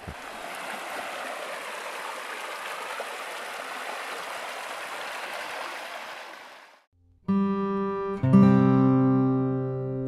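Stream water running over rocks: a steady rush that fades out about seven seconds in. After a short gap, plucked string music begins.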